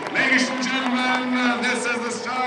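Crowd of spectators shouting and cheering in many overlapping voices as the bike race starts, with a steady low tone underneath for the first second and a half.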